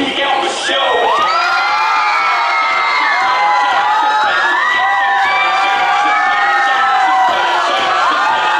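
Crowd cheering and screaming, many high-pitched voices overlapping, swelling in about a second in as the dance music drops away.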